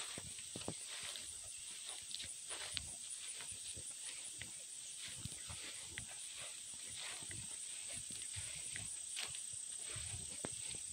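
Steady high-pitched chorus of insects in the grass, with scattered soft footsteps on grass.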